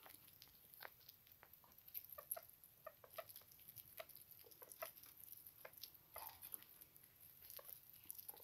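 Faint, irregular small clicks and crunches from sugar gliders eating mealworms at the hand.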